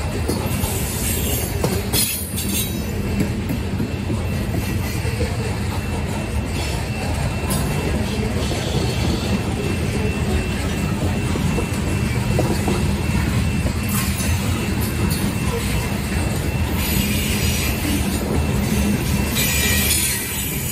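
Freight train of covered grain hopper cars rolling past at steady speed: a continuous rumble of steel wheels on rail with a faint, steady high wheel squeal.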